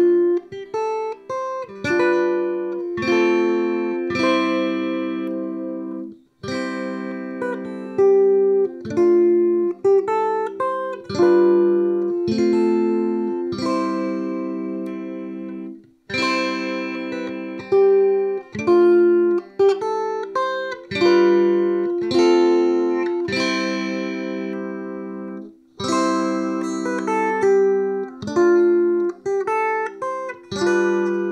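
Fanner Exosphere electric ukulele played in chords through a Hughes & Kettner Spirit of Vintage nano amp head and a Barefaced One10 bass cab, on a clean, undistorted setting. Each chord rings and fades, with short breaks between phrases.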